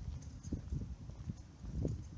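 Footsteps on pavement, a series of short knocks every quarter to half second, over a low wind rumble on the microphone of a handheld camera.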